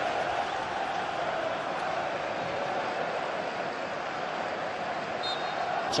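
Football stadium crowd noise: thousands of spectators making a steady, even din of many voices.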